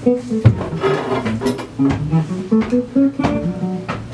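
Electric guitar playing a quick run of short, plucked single notes in its low register, the loudest attack about half a second in.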